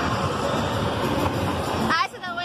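Loud, steady rushing rumble of a spinning fairground ride, with wind buffeting the phone microphone as it whirls. A voice cries out with a rising pitch near the end.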